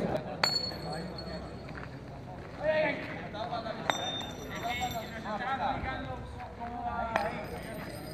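Three sharp metallic clinks from thrown metal game discs, each ringing briefly, spaced about three seconds apart, over men's voices.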